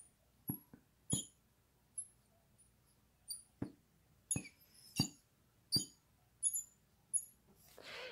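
Hot wood-burning pen tip burning into a pine round, the sap in the wood popping and crackling as it flares up: a dozen or so sharp pops at irregular intervals, many with a brief high chirp.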